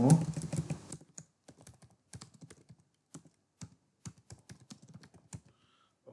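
Typing on a computer keyboard: a run of separate, irregularly spaced key presses as text is deleted and retyped into a form field.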